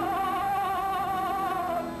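An operatic tenor voice singing one long held note with a wide vibrato, breaking off shortly before a new note begins.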